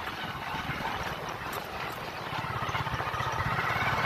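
Hero motorcycle's single-cylinder engine running while riding, with road and wind noise, getting steadily louder toward the end.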